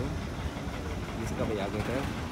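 Voices talking in the background over the low, steady sound of an idling tractor engine.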